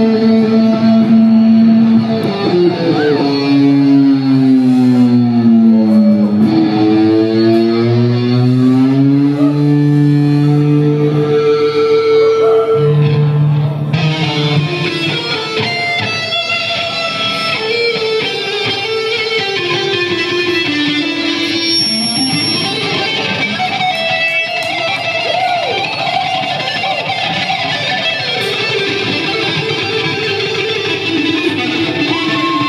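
Two electric guitars playing a live duet in harmony. A few seconds in, held notes slide down in pitch and back up. From about halfway the playing turns to faster runs of shorter notes.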